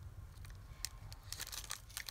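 Faint handling noise: a few light clicks and a soft rustle as hands turn over a small cork ornament with a metal clasp and dangling charm.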